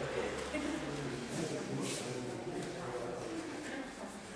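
Indistinct background chatter of spectators' voices in a sports hall, without clear words.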